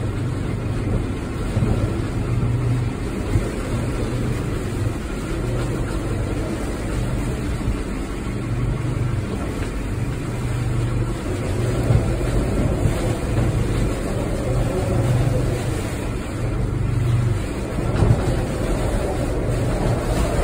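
Storm-force wind blowing around a moored boat, a steady rushing noise with a low rumble that swells and eases every second or two.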